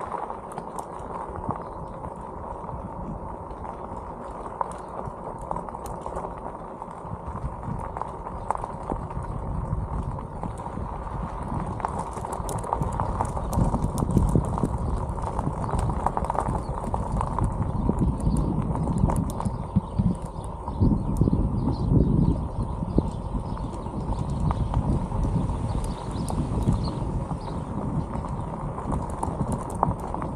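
Bicycle tyres crunching and rattling over a gravel road, mixed with wind rumbling on a helmet-mounted camera's microphone; the rumble grows louder about a third of the way in.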